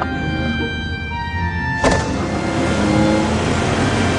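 Background music, with a sudden thump about halfway through, followed by the steady rush of a car driving off.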